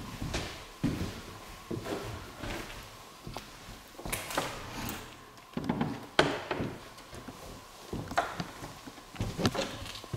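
Old wooden plank door being opened by its iron thumb latch, with a sharp latch click a little after six seconds in, among scattered knocks and bumps of wood.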